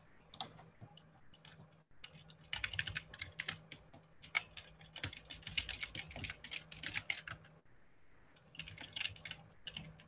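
Faint typing on a computer keyboard: quick runs of keystrokes from about two and a half seconds in until about seven and a half, then another short run near the end.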